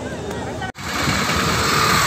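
A voice over a gathered crowd. After a sudden cut, steady, fairly loud outdoor street noise takes over, with a vehicle-like rumble.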